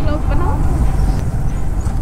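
Steady low rumble of wind and engine while riding a Yamaha motorcycle, with faint voices under it.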